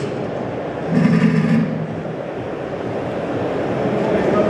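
A metal-legged chair dragged across a hard floor, scraping once for about half a second, about a second in, over a steady background hum.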